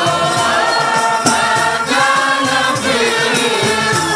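Group of men singing a qasida, an Islamic devotional song, in maqam sikah into hand-held microphones, with long held notes and several voices together.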